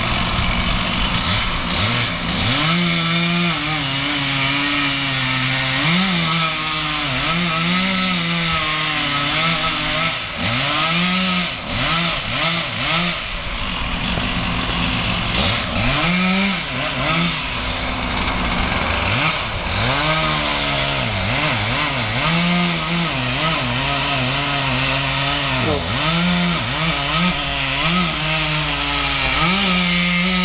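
Chainsaw cutting through a tree trunk, its engine revving up and dropping back again and again as it cuts. Under it a crane's engine runs steadily.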